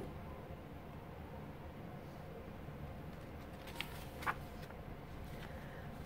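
Quiet, steady room noise with two brief soft rustles about four seconds in, half a second apart, as a picture book's paper page is turned.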